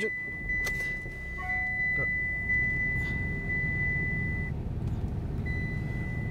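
The 2008 Mitsubishi Outlander's 2.0 DI-D turbodiesel engine starts and settles into a steady idle, heard from inside the cabin. A steady high-pitched electronic warning tone sounds over it, breaks off shortly before the end, then sounds again.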